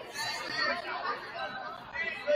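Indistinct chatter of several voices echoing in a gymnasium.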